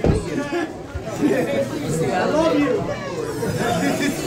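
Voices talking over background chatter, with no music playing. There is a short low thump right at the start.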